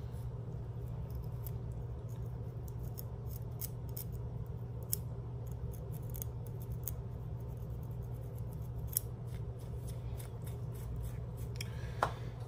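A thin pick and fingernails scratching a dry, dandruff-flaked scalp between braided twists: a run of short, irregular, crisp scratching strokes over a steady low hum.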